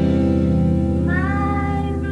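Amateur rock band playing live: guitar chords ring on, and about a second in a high note slides up slightly and is held over them.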